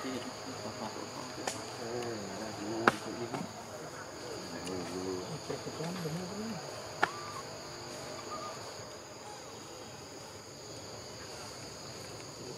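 Steady, high-pitched chorus of insects, with two sharp clicks standing out about three and seven seconds in.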